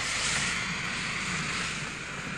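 Steam locomotive running, a steady rushing noise with no clear beat.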